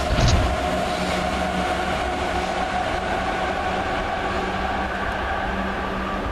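Elevated metro train crossing a steel viaduct, a steady rolling noise with a held whine, a little louder just after the start.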